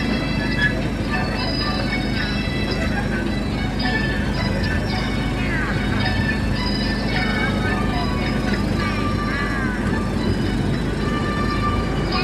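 Steady low running rumble of a small sightseeing train, with music and voices over it.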